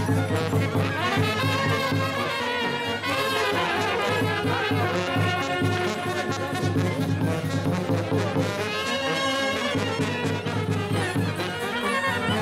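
Romanian brass band (fanfară) playing a folk tune for the Capra goat dance, trumpets carrying the melody over a steady pulsing bass beat.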